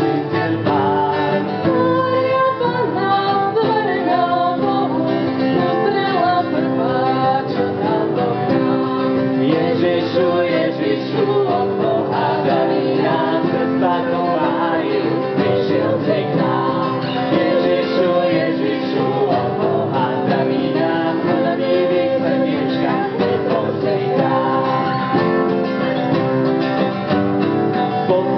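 Two acoustic guitars strummed together, with voices singing a melody over them, a woman's among them: a small live vocal group with guitars.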